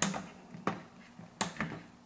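Nest Learning Thermostat 4th Gen display being pressed onto its wall base plate: three short sharp plastic clicks about two-thirds of a second apart as it snaps into place.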